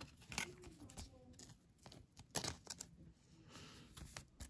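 Pokémon trading cards being handled and set down on a desk: several faint clicks and taps of card stock, the loudest about halfway through, and a short soft sliding rub near the end.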